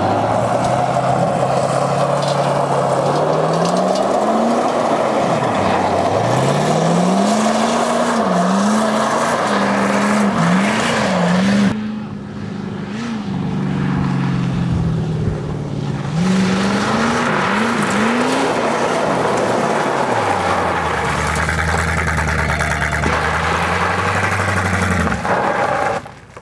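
Car engine being revved hard, its pitch climbing and dropping again and again, over steady tyre noise on the dirt road; about 20 seconds in the engine settles into a steadier, lower note.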